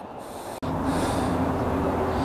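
Steady outdoor background noise with a low hum underneath. It starts abruptly about half a second in, after a brief quieter stretch.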